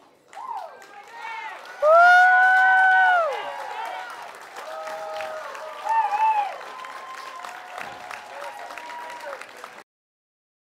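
High-pitched voices cheering and shouting over scattered clapping, with one long, loud high cheer about two seconds in. The sound cuts off abruptly just before the end.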